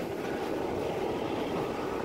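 Passenger train running along the track, a steady rumble of wheels and carriages heard through an open carriage window.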